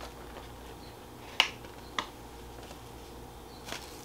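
Two sharp light taps about half a second apart, with a fainter one near the end, made while a paper bag is handled over a low steady hum of room tone.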